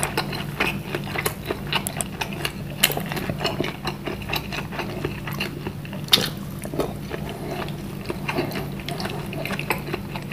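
Close-miked chewing and wet mouth sounds of a man eating beef meatballs (bakso) by hand, many small irregular smacks and clicks, two sharper ones about three and six seconds in. A steady low hum runs underneath.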